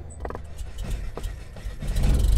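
3D-printed twin-boom RC plane rolling over a rough dirt strip: a low rumble with scattered clicks and knocks, growing louder toward the end.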